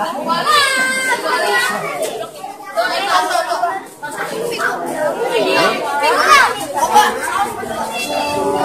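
A group of children chattering, many voices overlapping one another.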